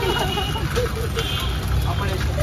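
Women chattering and laughing over a steady low rumble of street traffic.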